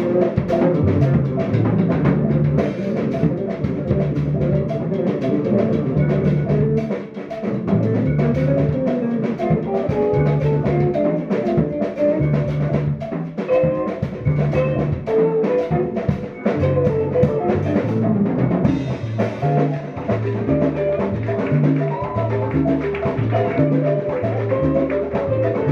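Live Afro-Cuban jazz band playing: upright double bass moving through stepping bass lines, electric guitar, and busy drums and percussion in a dense rhythm.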